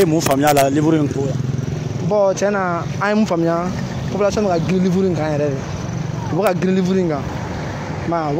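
A man talking, with a steady din of street traffic underneath.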